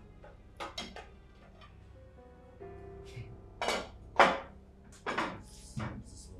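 Kitchenware clinking and knocking as it is handled at a counter: a few sharp strikes near the start, then a cluster later, the loudest about four seconds in, over soft background music with held notes.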